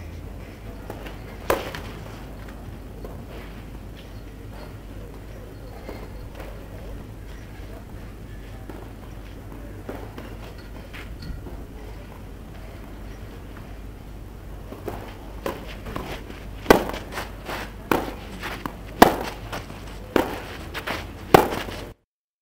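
Tennis ball on a clay court: one sharp pop about a second and a half in. From about fifteen seconds a run of sharp pops follows, the loudest about every second, with weaker ones between: racket strikes and ball bounces.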